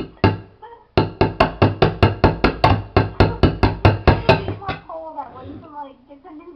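Knife point stabbing rapidly at the metal lid of a tin can, about twenty sharp metallic hits at roughly five or six a second. They puncture the lid to force the can open without a can opener.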